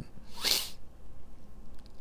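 A man's short, sharp breath through the nose, a single sniff-like hiss about half a second in.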